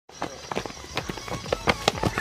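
Running footsteps of soccer players: quick, irregular thuds, several a second.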